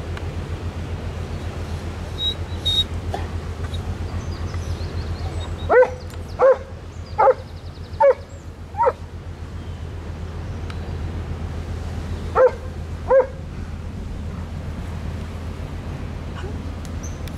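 A dog barking: five barks a little under a second apart, then two more a few seconds later. Under them runs the steady low drone of a passing motor cargo ship's diesel engines.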